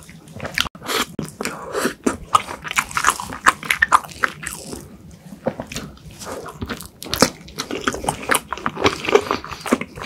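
Close-miked eating of cream-filled crepe cake: a bite and wet, sticky chewing with lip smacks, made up of many short sharp clicks throughout.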